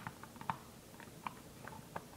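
Faint, scattered clicks and taps of plastic Lego bricks as a Lego lid is handled and lowered onto a Lego box.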